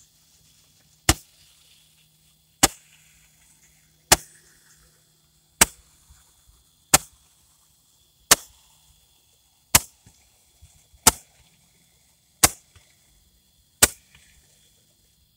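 Roman candle firework firing shot after shot: ten sharp pops, evenly spaced about one and a half seconds apart.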